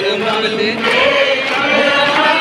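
Many voices chanting and singing together in a devotional chant, heard over a large crowd.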